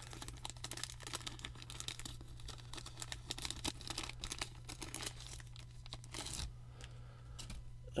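Clear plastic wrap and plastic card top loaders crinkling and clicking as a stack of sleeved cards is unwrapped and handled: dense small crackles that thin out after about six seconds, over a steady low hum.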